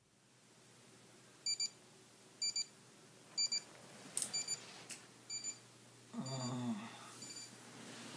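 Digital bedside alarm clock going off: short high-pitched beeps in pairs, about once a second, the signal to wake up.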